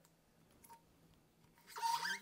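Near silence: room tone, with a brief faint rustle near the end.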